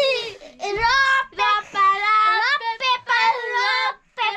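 Children singing a sing-song game rhyme in high voices, with held and gliding notes.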